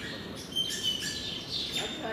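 Small birds chirping, a run of short high calls and brief whistled notes in quick succession.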